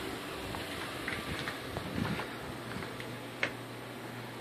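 Steady outdoor background noise with light wind on the microphone, and a faint knock about three and a half seconds in.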